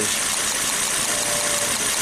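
Volvo S60 turbo engine idling rough with a misfire on cylinder one, a cylinder that barely changes the running when its coil is disturbed, which the mechanic takes for mechanical damage inside that cylinder.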